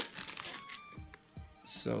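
Clear plastic wrapping crinkling as it is pulled off a cardboard box, mostly in the first half-second, then dying away.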